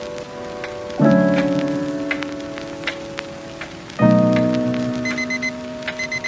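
Horror film score over a cinema sound system: two deep sustained chords, struck about a second in and again about four seconds in, each fading slowly, over a faint patter of scattered clicks.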